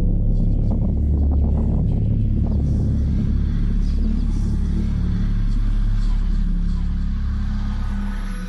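Film-trailer sound design: a loud, deep, steady rumble with faint crackling above it, sustained without a break.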